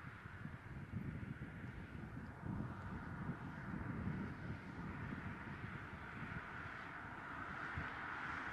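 Outdoor ambience: an uneven, low wind rumble on the microphone over a faint, steady background hum.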